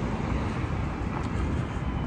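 Steady city street traffic noise: an even rumble and hiss with no distinct events.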